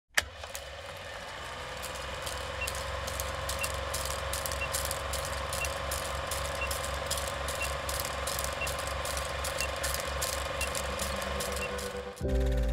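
Old film projector running: a steady mechanical whirr with a fast, even clatter of the film advancing, plus scattered crackle and clicks. It starts with a click, and a short, faint beep sounds about once a second through the second half, in time with the countdown leader.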